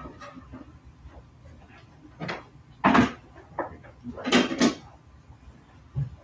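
Stacked communion trays being handled and set down, giving a few short clattering knocks; the loudest comes about three seconds in, followed by a quick pair about four and a half seconds in.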